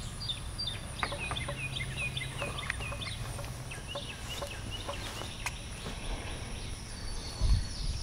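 Birds chirping in quick, repeated short high notes, with a few faint clicks and a low steady hum underneath.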